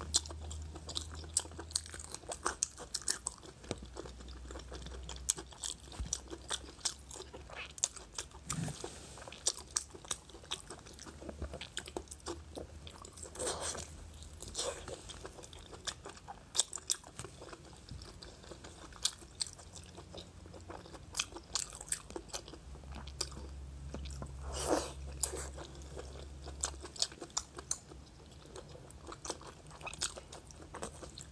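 Close-miked biting and chewing of sticky glazed pork large intestine: a steady run of irregular short mouth clicks and smacks, with a few louder smacks along the way.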